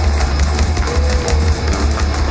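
Live folk-punk band playing loudly, the drum kit to the fore with a steady bass drum and cymbal hits. A held note comes in about halfway through.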